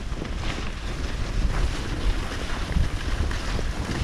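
Wind buffeting the microphone of a camera carried by a skier moving fast downhill, a gusty low rumble, with the steady hiss and scrape of skis running on hard-packed groomed snow.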